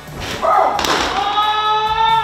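A thrown baseball smacks into the catcher's mitt with one sharp pop just under a second in. A long, held voice-like note follows and runs on after it.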